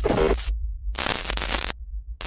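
Glitch sound effect: two short bursts of harsh static, about half a second each with a brief gap between, over a steady low hum.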